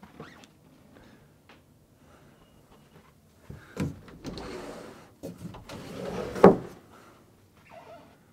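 Bifold closet doors being pulled open: a click, then the doors sliding and rattling along their track, ending in a sharp knock as they fold back, about six and a half seconds in.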